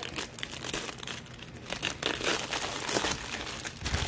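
Clear plastic shrink-wrap crinkling and tearing in irregular crackles as it is cut with scissors and pulled off a box.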